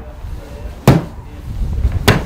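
A golf iron striking a synthetic turf hitting mat in small, quick swings: one sharp strike about a second in and another right at the end, about a second apart.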